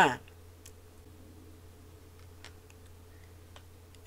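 Faint low steady hum with a few scattered faint clicks, after a spoken word ends at the very start.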